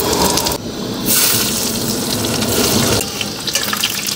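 Hot oil sizzling as food fries in a steel kadai. The sizzle jumps louder about a second in, as food goes into the oil, and eases near the end while it is stirred with a ladle.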